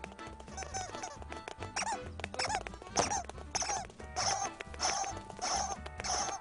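Cartoon birds' squeaky chirping calls in quick succession, growing louder and more regular about halfway through at roughly two a second, over an orchestral film score.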